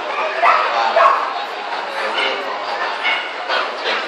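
A dog barking, with two loud short barks about half a second and a second in and fainter ones after, over the murmur of a crowded hall.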